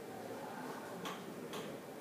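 Dry-erase marker tapping and stroking on a whiteboard while writing: two short, faint ticks about a second in and half a second apart, over quiet room tone.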